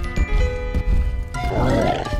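Cartoon chase music with low thuds, then a rough growling roar from a cartoon dinosaur about a second and a half in.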